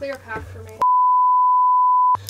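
A brief spoken exclamation, then a steady, single-pitched censor bleep that blanks out all other sound. It starts under a second in and lasts over a second, covering a swear word.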